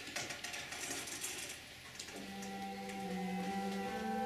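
Faint light clicks, then about two seconds in a Yamaha Electone ELS-02C begins to play: a held low note under a sustained chord that swells gradually, the opening of a piece.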